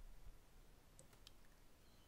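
Near silence with two faint computer-mouse clicks about a second in, a third of a second apart.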